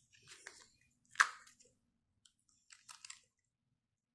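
Short crackles and crunches from handling an opened Kinder Joy plastic cup and its crispy wafer balls in cream, with the loudest a single sharp crunch about a second in and a few small clicks near the end.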